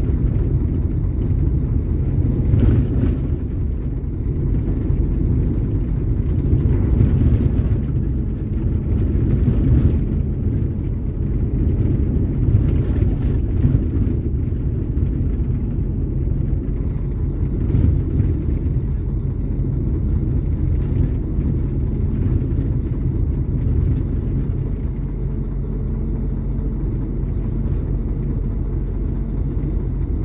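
Heavy truck driving, heard from inside the cab: a steady low rumble of engine and road noise, with faint light knocks here and there.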